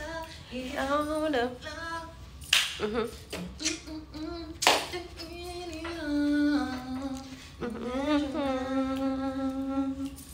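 A woman singing a wordless, humming tune to herself, sliding between notes and holding long notes in the second half. Two sharp smacks cut in, about two and a half seconds in and again near five seconds.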